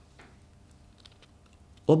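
Quiet pause with a few faint, soft clicks of a sheet of paper being handled on a wooden desk.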